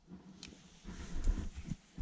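A climber's hard breathing at altitude, with uneven low rumbling bumps of wind and handling on the microphone while scrambling over rock. A sharp click comes about half a second in.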